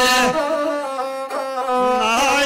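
A gusle, the single-string bowed folk fiddle, playing a nasal, wavering line between sung verses. A man's sung epic phrase ends just at the start.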